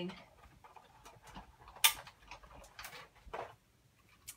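Light clicks and taps of thin metal cutting dies and cardstock pieces being set in place on a magnetic die-cutting plate, with one sharper click about two seconds in.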